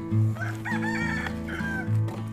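A rooster crowing once, a long call beginning about half a second in, over background music with a steady low beat.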